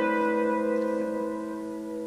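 An open upright piano's chord ringing out and slowly fading away.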